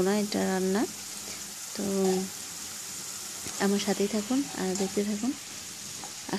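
Mung dal and spice paste sizzling as it fries in a nonstick pan, stirred with a wooden spatula. A person's voice talks over it in short phrases.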